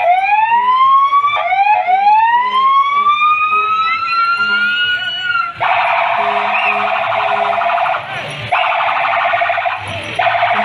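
Fire truck's electronic siren: slow rising wail tones for about the first half, then a fast warbling yelp from a little past halfway, broken briefly by one more rising sweep.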